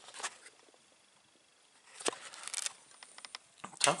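A quiet room with the pure sine wave power inverter switched on and its cooling fans not running, broken by handling noises. There is a sharp knock about two seconds in, then a run of small clicks and rattles near the end as the inverter and its cables are handled.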